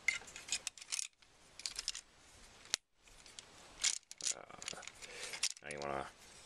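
Hard plastic parts of a Transformers Hunt for the Decepticons Voyager Optimus Prime figure clicking and clattering as its leg and knee pieces are flipped, folded and tabbed into place: a scatter of short sharp clicks with light rattling between them.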